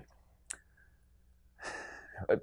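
A pause that is almost silent, broken by one short click about half a second in, then a man drawing a breath in near the end.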